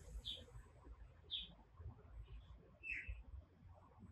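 Faint bird chirps: three short, high calls spread over a few seconds, the last one dropping in pitch, over a faint low rumble.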